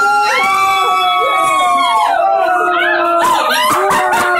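A dog howling in long, drawn-out cries that waver in pitch.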